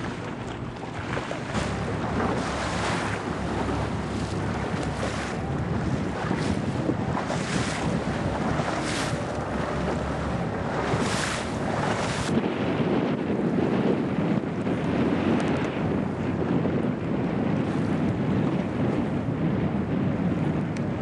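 Wind buffeting the microphone over water rushing past the hull of an E scow under sail, with repeated hissing surges of spray every second or two during the first twelve seconds, then a heavier, lower rush.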